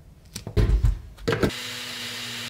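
Countertop blender motor whirring steadily, blending fruit and milk into a smoothie, cutting in abruptly about one and a half seconds in after a few heavy low knocks.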